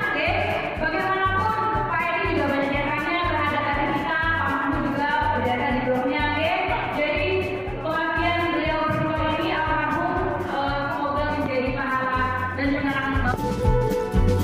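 Song with a singing voice over a steady low beat.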